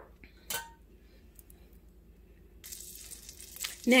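A short clink about half a second in, then butter and bacon drippings beginning to sizzle in a hot enamelled cast-iron brazier: a faint, steady hiss that sets in about two-thirds of the way through.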